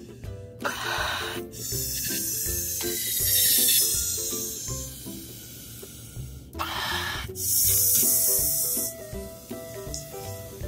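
A person blowing by mouth through a plastic inflation nozzle into a Wubble ball's balloon. Air rushes through in two long blows: one about half a second in, lasting a few seconds, and one about six and a half seconds in. The balloon is being inflated. Background music plays underneath.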